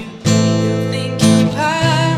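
Acoustic guitar strumming chords, with a woman's sung note coming in near the end.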